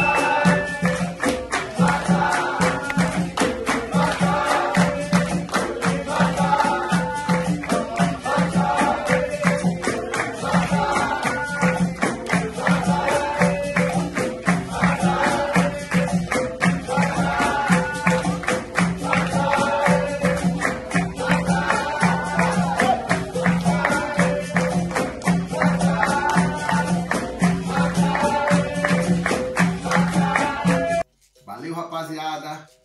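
Capoeira roda music: berimbaus and an atabaque drum with jingling, rattling percussion keep a steady, even rhythm while a group sings.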